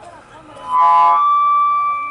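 A man's voice shouting through a public-address loudspeaker, with a steady high-pitched microphone feedback tone that rings under the shout and holds on for about a second after the voice stops.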